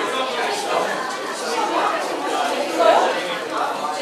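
Indistinct chatter of several people talking at once in a lecture hall.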